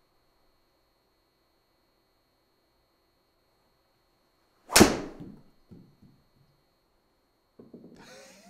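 Golf driver striking a teed ball: one sharp, loud crack with a short echoing tail in a small room, followed about a second later by a fainter knock. The strike sounded pretty good.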